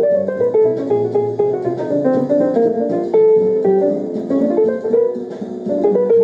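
Instrumental guitar music, with plucked notes moving in quick runs.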